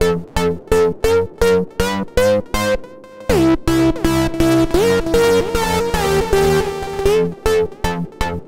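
Korg KingKORG virtual analogue synthesizer played with its valve drive turned up and boost on, giving a really gritty, grainy distorted tone. It plays a run of short repeated notes, then longer held notes with gliding pitch, and short notes again near the end.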